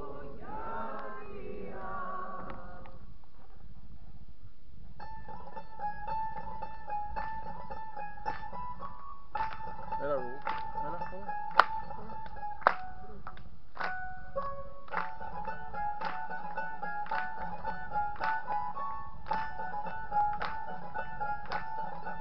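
Singing voices end within the first three seconds. After a short pause, a plucked-string orchestra of mandolins and guitars starts playing a sustained tremolo melody over plucked chords. Two sharp clicks come near the middle.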